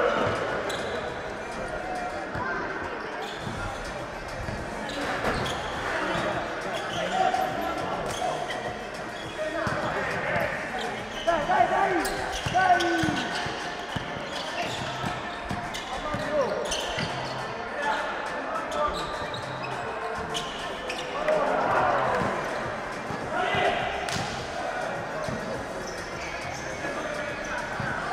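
Indoor basketball game: the ball bouncing on the court in irregular knocks, with players' voices calling out, echoing in a large hall.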